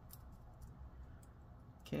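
A few faint, scattered small clicks as fingers handle and line up a MacBook Air battery flex-cable connector over its board socket, over a low steady room hum.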